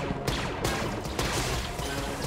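Blaster fire in a corridor firefight: several sharp shots cracking out at uneven intervals over background music.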